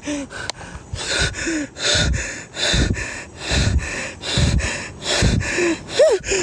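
A man's heavy, rapid breathing close to the microphone, one loud gasping breath a little under every second: out of breath while walking.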